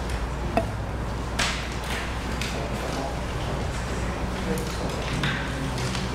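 Meeting-room background with a steady low hum and quiet murmured voices, broken by a few scattered clicks and taps. The sharpest is a single clink just over half a second in.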